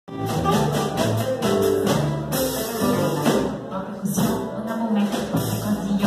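Small acoustic jazz band playing live: upright double bass walking under strummed acoustic guitar, with light drums keeping a steady beat, and a woman singing into a microphone.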